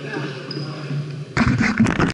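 Faint voices in a large gym, then about one and a half seconds in, a sudden run of loud knocks and rubbing right at the microphone. This is the camera being handled as someone takes hold of it.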